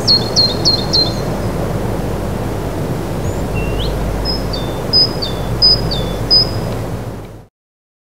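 Outdoor street ambience: a steady low background noise with a small bird chirping, a quick run of four chirps about a second in and then a few high two-note chirps, each dropping in pitch, a little later. The sound cuts off suddenly near the end.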